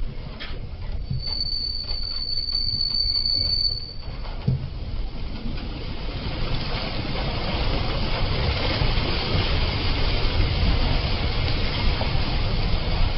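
A vehicle driving along a rough road, with engine and road noise and rattling knocks. A steady high-pitched squeal starts about a second in and lasts nearly three seconds. After that the road noise grows steadily louder.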